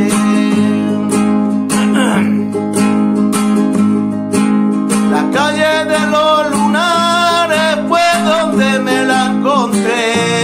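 Nylon-string Spanish guitar with a capo strummed in a steady rumba rhythm, the strokes coming fast and even. A man's voice sings over it from about five seconds in.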